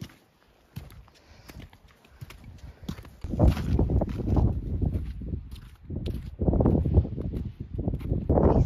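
Footsteps crunching on an icy, snow-covered hill path: a few sharp crunches at first, then louder, irregular low rumbling surges through the second half.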